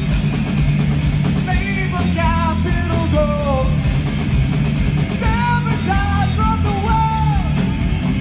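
Live rock band playing loud and steady: drum kit with repeated cymbal crashes, distorted electric guitar and bass guitar. A wavering melody line rises over the band twice, in the first half and again in the second.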